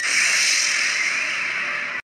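Regeneration sound effect: a loud, steady rush of noise that starts abruptly as the regeneration energy bursts out, and cuts off suddenly at the end.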